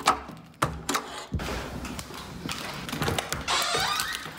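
A key ring rattling as a key is worked in a metal door deadbolt and lever lock, giving a few sharp clicks and knocks in the first second or so. Near the end there is a longer jingle of the keys. Soft background music runs underneath.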